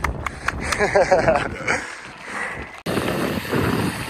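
Wind rush and road noise from a bicycle-mounted camera while riding a road bike, with a short burst of a man's laughter about a second in. The sound cuts off abruptly near three seconds and resumes with a different texture.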